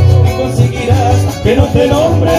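Live folk band's acoustic guitars playing an instrumental passage between sung verses, over a steady, repeated low bass pulse.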